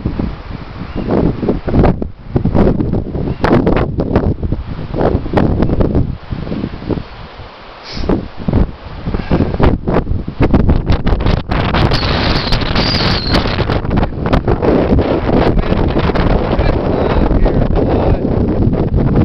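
Wind buffeting the microphone in gusts, easing briefly around seven seconds in.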